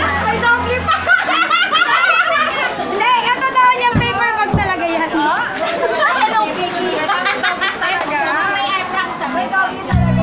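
Several people talking over one another in a lively chatter, while a background music bed drops out just under a second in. Two short thumps land about four seconds in.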